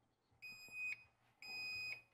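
Emporia Level 2 EV charger beeping twice as it powers up on being plugged into its outlet: two high electronic beeps about a second apart, the second held steady for about half a second.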